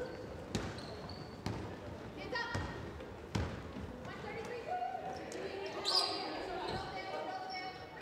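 Basketball bounced on a hardwood gym floor: a few separate knocks in the first few seconds, with a short high squeak about six seconds in.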